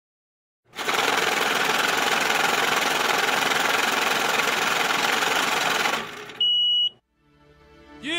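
Album-intro sound effects: a loud, dense noise for about five seconds that cuts off, then a short high steady beep, then a moment of silence before music fades in.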